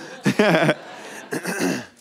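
A man clearing his throat, with two short vocal sounds, one about half a second in and one about a second and a half in.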